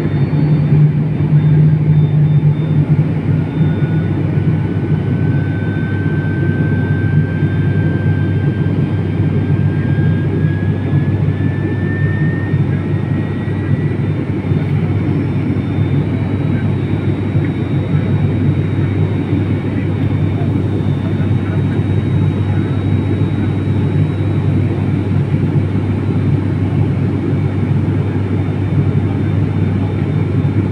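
Steady low drone of a turboprop airliner's engines and propellers heard inside the cabin. A faint high whine slowly rises in pitch through the first half.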